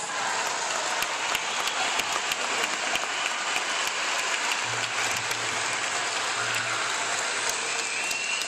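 A large crowd applauding steadily, a dense patter of many hands clapping, as a speaker is introduced.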